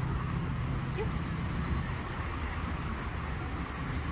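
Steady low background hum of outdoor noise, with one short faint whine from a puppy about a second in.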